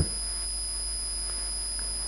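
Steady background noise of the recording itself: a constant high-pitched whine with a low electrical hum beneath it.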